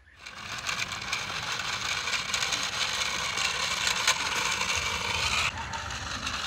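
Plastic toy fighter jet pushed by hand along a concrete wall: a steady whirring scrape of its small wheels.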